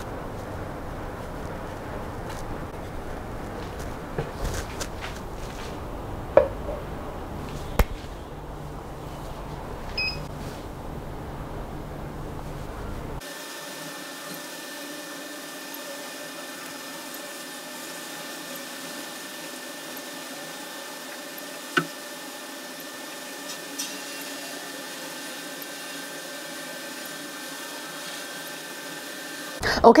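Faint room noise with a few light knocks and taps of small objects being handled on a metal tray while scanning powder is applied. About thirteen seconds in, the sound switches abruptly to a steady hum with faint held tones, broken by one sharp tick.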